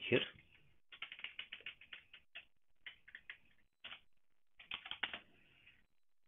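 Computer keyboard being typed on in short clicks: a fast run of keystrokes about a second in, a few scattered taps, then another quick burst near the end.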